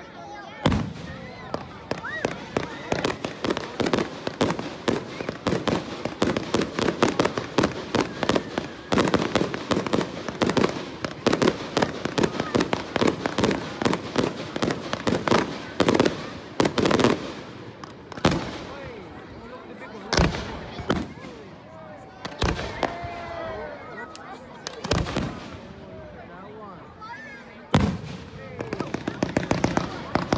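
Fireworks display: a rapid, dense run of crackling bangs for the first half or so, then single louder bangs a few seconds apart, with the rapid crackling picking up again at the very end.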